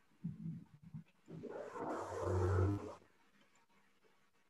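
Rough, garbled sound coming over a video call from an attendee's unmuted microphone: a few short low sounds, then a louder noisy burst about a second and a half long.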